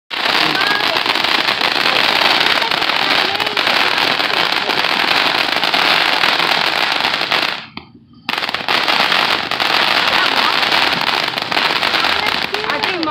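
Ground fountain firework spraying sparks with a loud, continuous rush of crackling. It breaks off for about half a second a little before eight seconds in, then starts again just as loud.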